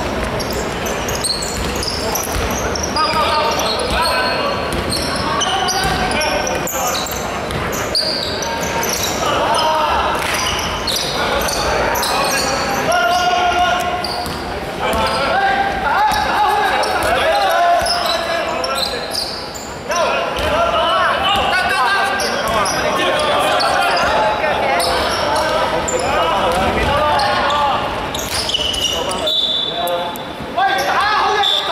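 A basketball being dribbled on a hardwood court, with players' voices calling out, in a large sports hall.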